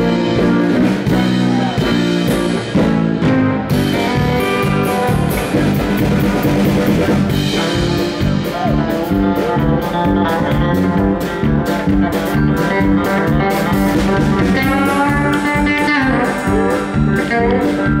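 Live instrumental country-rock band playing: electric bass, electric banjo, electric guitar and drum kit at a brisk, steady tempo, with bent guitar notes near the end.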